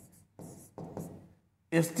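Pen writing on an interactive display board: two short scratchy strokes as a word is written. A man's voice starts up near the end.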